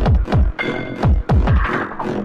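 Hardtek/tribe electronic music: a fast kick drum about three beats a second, each kick dropping in pitch, under layered synth tones, with a noisy swell near the end.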